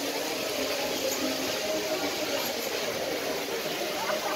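Steady background noise aboard a moving amusement-park flying-elephant ride, with faint crowd voices mixed in.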